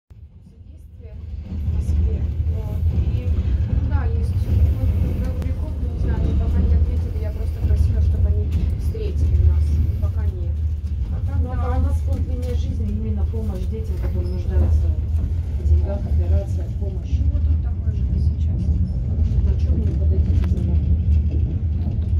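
A moving passenger train heard from inside a sleeper carriage: a steady low rumble of the train running along the track, with scattered light clicks and rattles. It fades in over the first two seconds.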